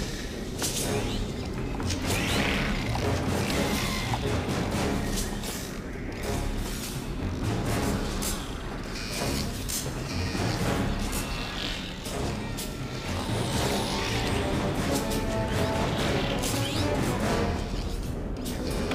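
Film score over a low mechanical rumble inside a Borg ship, with repeated sharp metallic clanks throughout.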